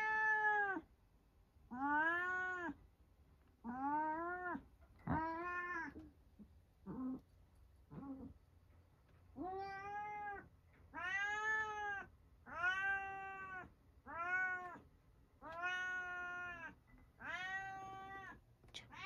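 Domestic cat meowing over and over, about a dozen drawn-out meows spaced a second or two apart, each rising and then falling in pitch, a couple of them short and faint near the middle.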